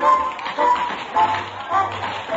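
Upbeat dance-band music for a nightclub floor show, with sharp accented chords landing about twice a second over a bass line, heard on an old 1951 radio-drama recording.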